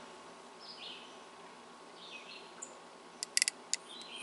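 Faint birdsong: a few short, falling chirps over a quiet outdoor background. A quick run of sharp ticks comes near the end.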